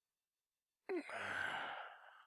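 A man sighing: one long breathy exhale that starts about a second in and fades out after just over a second.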